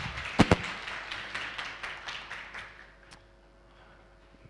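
A small audience clapping briefly, the applause thinning out and dying away about three seconds in, with two sharp knocks near the start. A faint steady room hum follows.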